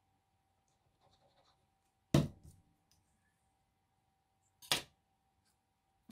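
Light paper handling, then two sharp knocks of small objects set down on a tabletop: the louder about two seconds in, another near the end.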